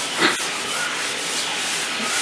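Cloth rubbing across a whiteboard, wiping off marker writing, with one short louder bump about a quarter second in.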